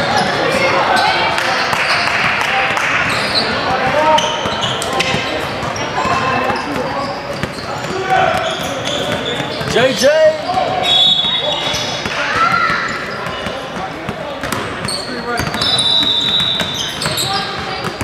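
Basketball gym ambience in a large echoing hall: many players' voices talking and calling over each other, with basketballs bouncing on the hardwood court throughout. A couple of short high-pitched tones cut through, the longer one near the end.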